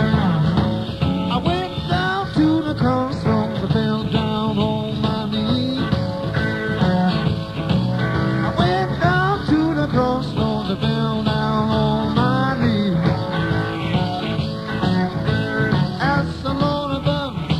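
Live blues-rock band playing an instrumental passage: an electric lead guitar plays bent, gliding notes over bass and drums.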